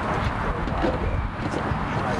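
Outdoor sports-field ambience: a steady low rumble with faint, distant voices and shouts.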